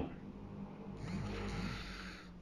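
Faint low background hum with a soft swell of noise from about a second in, in a pause between spoken sentences.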